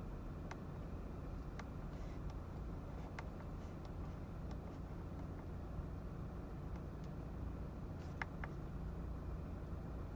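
Quiet, steady low hum inside a parked car, broken by a few faint clicks, two of them in quick succession near the end. The clicks fit the steering-wheel switch being pressed to scroll the instrument-cluster display.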